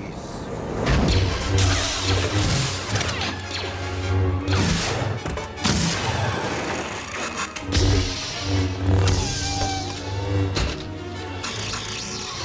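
Movie sound effects of lightsabers: a deep electric hum that swells and fades with the swings, cut by several sharp crashes, over orchestral score. Near the end a lightsaber blade burns into a metal blast door.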